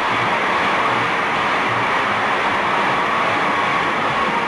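Auditorium audience applauding, a steady even clapping.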